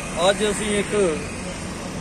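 Steady road traffic noise beside a roadside market street, heard under a man's brief words in the first second and alone for the second half.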